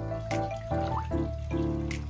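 Background music: a light melody over sustained bass notes with a regular beat.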